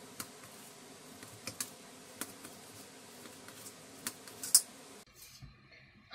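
A knife cutting through soft steamed bottle-gourd rolls, its blade clicking against a steel plate in light, irregular taps, the loudest about four and a half seconds in.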